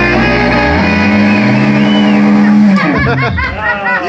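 Live rock band with electric guitars holding a long, loud sustained chord, which breaks up near the end into a burst of swooping, bending pitches.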